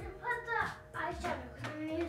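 Quiet talking, much softer than the conversation on either side.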